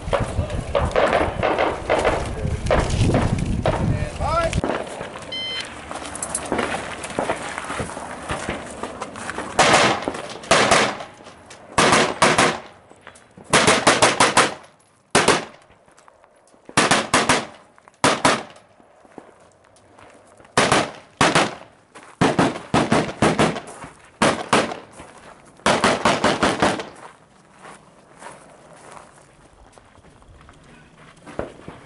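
Rapid strings of gunshots from a competition shooter engaging targets on a three-gun stage. The shots come in quick clusters of several, with short pauses between groups, starting about ten seconds in.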